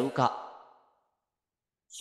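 The end of a spoken phrase in a man's voice, fading out within the first half-second, followed by about a second of silence.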